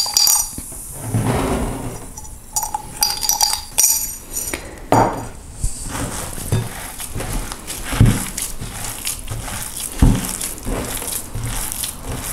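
Glass clinking as a small glass is handled against a glass mixing bowl, a few ringing clinks near the start and again around three to four seconds in. Then hands squish and knead a crumbly sesame-flour dough in the glass bowl, with a couple of soft thumps against the bowl.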